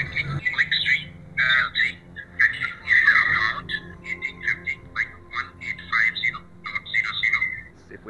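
A recorded phone call playing through a smartphone's speaker: thin, tinny voices cut off below and above the middle range, with a caller telling someone to write a check. A faint steady low hum runs underneath.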